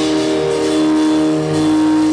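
Live instrumental rock band: electric guitars and bass guitar holding one long sustained chord, with little drumming and a slight dip about one and a half seconds in.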